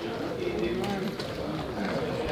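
Indistinct voices of people talking, not clearly worded, with a few faint ticks.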